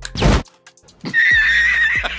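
Cartoon sound effects: a sharp, loud burst just after the start, then, after a brief lull, a high, slightly wavering held cry or tone lasting about a second.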